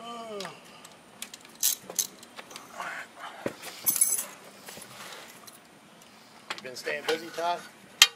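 A few sharp metallic clinks and a jingle of small metal objects, about two seconds in and again around four seconds, with a brief muffled voice at the start and more low voices near the end.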